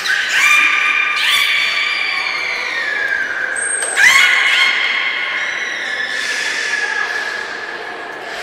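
Beluga whales vocalizing: long, drawn-out whistle-like calls that overlap, each holding one pitch and sagging slowly downward. A brief very high tone sounds just before four seconds, and a fresh call starts sharply right after it.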